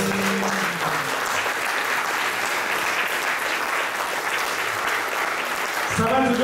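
Audience applauding steadily at the end of a song, as the band's last held note dies away in the first second.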